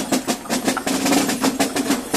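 Gilles' parade drums beating fast with rolls: a dense run of quick strikes, with a steady low tone under them from about half a second in.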